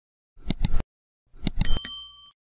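Sound effects for a subscribe-button animation: two quick mouse clicks, then another short run of clicks about a second later, followed by a bright, multi-tone notification-bell ding that rings on briefly.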